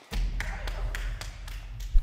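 A few scattered light taps over a low rumble.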